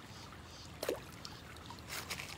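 Shallow creek water running steadily, with one short slap a little before the middle as a thrown slice of cheese hits the surface, and a brief click near the end.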